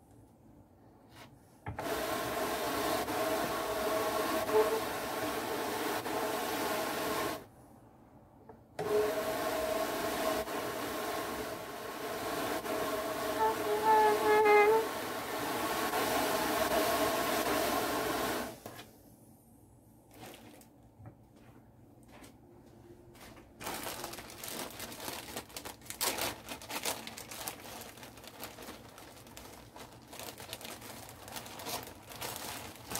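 Drum carder's drums running under power in two spells, a steady whirring hum with a short pause between, as fibre is carded into a batt. Near the end, a plastic bag of fibre crinkles as it is handled.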